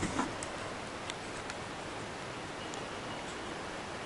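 Quiet outdoor background: a steady hiss with a few faint ticks.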